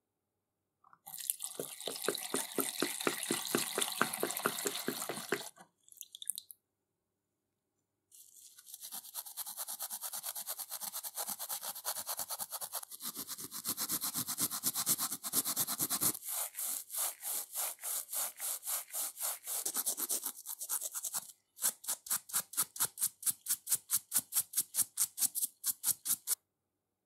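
A small stiff-bristled brush scrubbing rusty steel vise parts in rapid back-and-forth strokes, about four a second, scouring off rust. The scrubbing comes in three long runs with short pauses between them.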